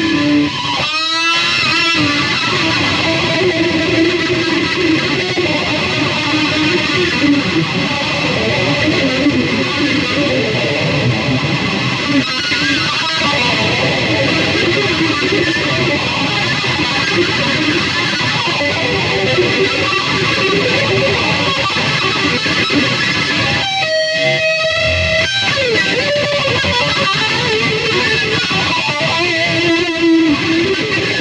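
Distorted electric guitar, a black Epiphone Les Paul Standard with a Super Distortion-style bridge pickup, played through a small amp in fast hard-rock riffs and lead lines. A sliding pitch sweep comes about a second in and another around 24 to 25 seconds.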